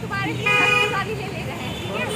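A vehicle horn honks once, a single steady note lasting about half a second, starting about half a second in, over the low hum of street traffic.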